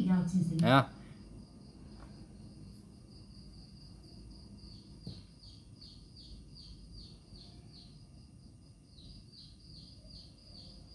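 Faint, rapid, repeated high chirping over low room noise, in two runs through the middle and near the end, with a thin steady high-pitched whine underneath.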